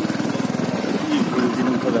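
A vehicle's engine running with a steady, rapid low pulsing, heard from on board. A voice speaks briefly in the second half.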